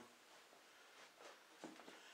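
Near silence: faint room tone, with a faint soft sound near the end.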